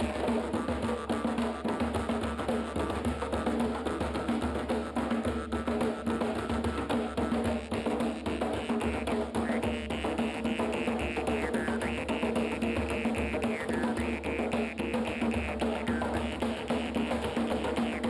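Several djembes played by hand in a fast, continuous ensemble rhythm. A held higher-pitched tone comes and goes over it in the middle of the passage.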